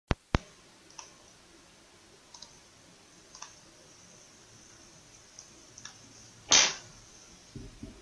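Computer mouse clicking: two sharp clicks right at the start, then several faint clicks spread over the following seconds, and a short rush of noise about six and a half seconds in.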